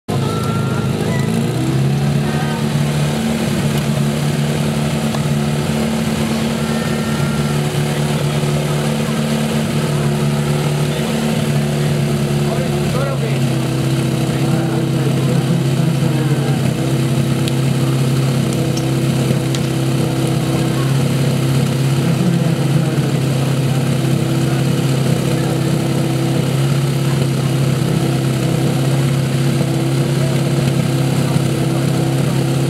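Portable fire pump's engine running hard while it drives water through the hoses in a fire-sport attack. Its pitch rises in the first couple of seconds and shifts about thirteen seconds in, then it holds steady.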